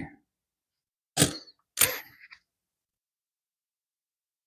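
Two short clinks of Lincoln cents being set down, about a second in and again half a second later; the second leaves a brief high metallic ring.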